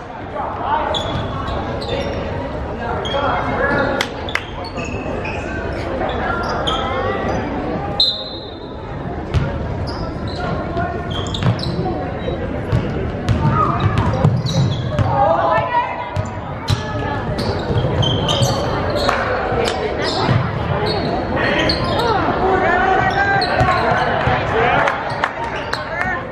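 A basketball bouncing repeatedly on a hardwood gym floor during play, among the voices of players and spectators in a large gymnasium.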